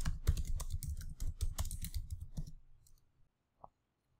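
Rapid typing on a computer keyboard for about two and a half seconds, then a single keystroke near the end.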